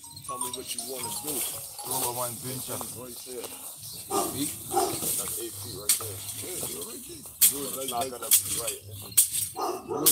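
People's voices talking, with music playing underneath and several sharp knocks in the second half.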